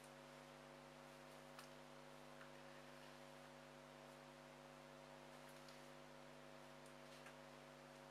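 Near silence: a faint steady electrical hum with a low hiss, and a few tiny faint clicks.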